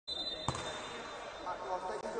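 A basketball bouncing once on a hard court about half a second in, over faint background voices.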